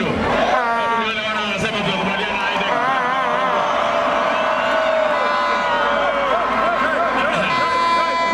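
Large rally crowd cheering and chanting, many voices at once, with some long drawn-out calls held for a couple of seconds.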